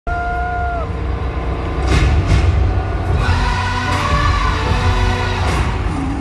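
Loud opening music of an arena concert over the PA, with heavy bass and sharp hits about two seconds in, under a cheering crowd. A shrill held cry from the audience falls away in the first second.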